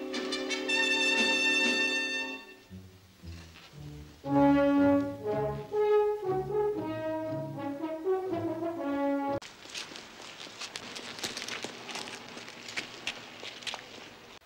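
Orchestral film score: a held chord, then a brass melody that cuts off suddenly about nine seconds in. It is followed by a dry crackling noise with scattered clicks.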